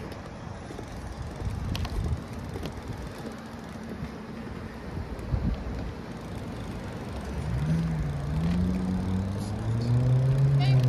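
City street traffic: a steady wash of passing cars, with a few brief knocks. Over the last couple of seconds a vehicle engine's hum rises and falls in pitch and grows louder.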